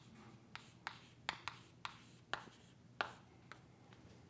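Chalk writing on a chalkboard: a series of short, sharp taps and scrapes, about eight strokes as a word is written, fairly faint.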